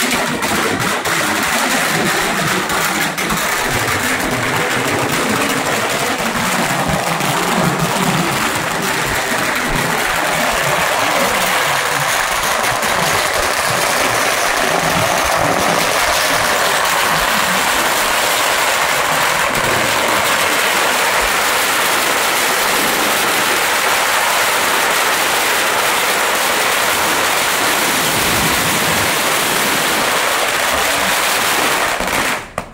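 A long string of firecrackers going off in a continuous, rapid crackle. It holds steady and loud throughout.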